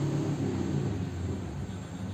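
A motor vehicle's engine hum, low and growing fainter over the two seconds.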